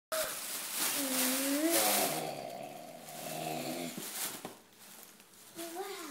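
A child's long, drawn-out excited exclamation without words, gliding in pitch, over the rustle of tissue paper being pulled from a gift. A few sharp paper clicks follow, then a short rising voice near the end.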